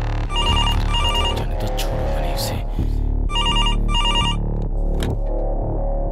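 Desk telephone ringing electronically: two double rings, a warbling two-tone trill, the second pair about three seconds after the first. Background film music runs beneath.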